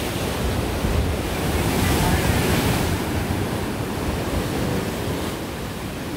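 Pacific surf breaking and washing over rocks, a steady rush that swells a little in the middle and eases off, with wind buffeting the microphone.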